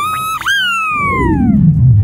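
Cartoon sound effect: a quick rising whistle glide, then a long falling whistle glide. A deep falling rumble swells up near the end.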